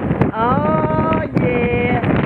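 Wind buffeting the microphone of a moving bicycle's camera. About a third of a second in, a pitched call rises and then holds for about a second, followed by a shorter, lower held tone.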